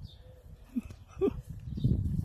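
Two small dogs tussling in snow, with two brief rising vocal sounds from the dogs about a second in, over a low rumbling noise.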